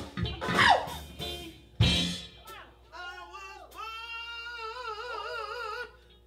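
Male singer with a live band: two loud band hits under short vocal bursts in the first two seconds, then one long held sung note with vibrato that fades just before the end.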